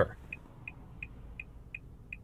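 2024 Nissan Altima's turn-signal indicator ticking, a sharp, high tick repeating evenly about three times a second, five ticks in all. The sharpness is likely meant to keep drivers from leaving the signal on.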